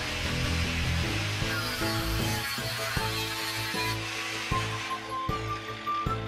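Background music over a small electric angle grinder running, its noise starting abruptly and fading away by about four seconds in.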